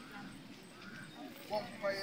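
Several people talking at a low level, their voices overlapping, with the talk growing louder near the end.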